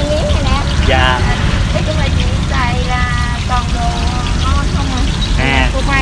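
People talking in short phrases over a steady low rumble.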